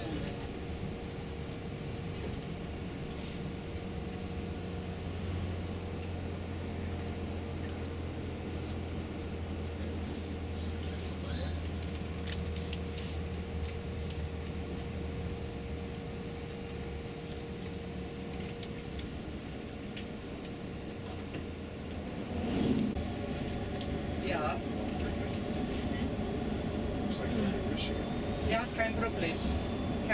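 Tour coach's engine and road noise heard from inside the cabin: a steady drone with a held low hum that changes about two-thirds of the way through. Low voices come in over it in the last few seconds.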